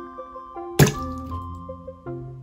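A raw egg whose shell has been dissolved in vinegar, held together only by its membrane, drops onto a plate and bursts with one sharp, wet splat a little under a second in. Piano-like background music plays throughout.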